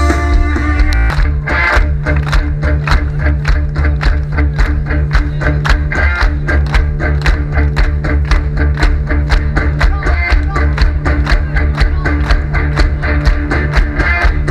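Live rock band playing loudly over a PA system: electric guitar, bass guitar and drums keeping a fast, even beat.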